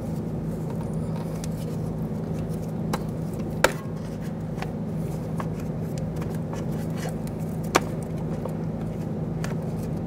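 Sharp clicks and taps of the ABS sensor wire being pulled from its plastic retainer clips by hand, two of them louder, about four seconds apart, over a steady low hum.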